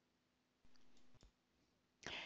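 Near silence, with a couple of faint computer mouse clicks a little over half a second and just over a second in, over a faint low hum.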